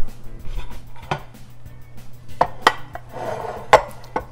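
Plates and cutlery clinking: about half a dozen sharp knocks, the loudest near the end, as a plate is fetched and handled beside a glass baking dish.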